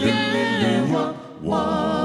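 A cappella doo-wop vocal group singing: a lead voice over sustained backing harmonies, with a short break between phrases a little past halfway.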